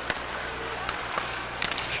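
Ice hockey arena sound: a steady crowd hum with a few sharp clicks of sticks and puck on the ice.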